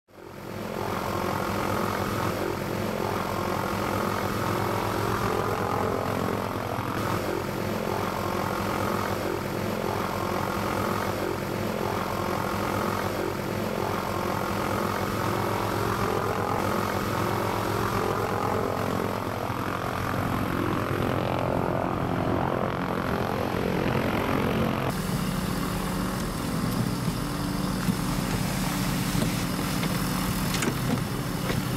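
Light propeller aircraft engine running steadily, fading in at the start. The sound changes in character about 25 seconds in.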